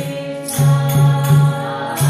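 Group kirtan: voices chanting a held, sung mantra over regular beats of a double-headed mridanga drum and the shaken metal jingles of a tambourine.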